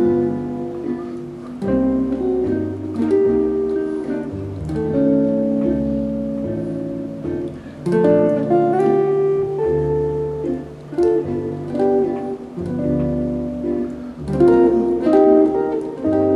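Ibanez GB10 hollow-body jazz guitar played solo in chord-melody style: plucked chords ringing over moving bass notes, changing every second or two.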